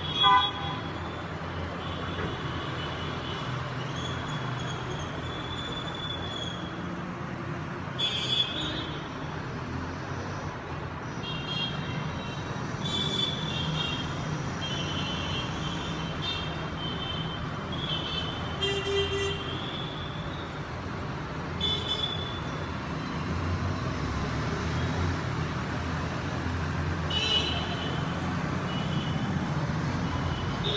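Steady street-traffic rumble with short, high horn toots now and then, most frequent in the middle stretch.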